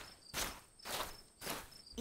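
Footstep sound effects at an even walking pace, a little under two steps a second, over faint chirping crickets.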